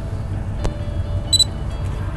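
A short high electronic beep just after the middle, with a single sharp click a little before it, over a steady low rumble.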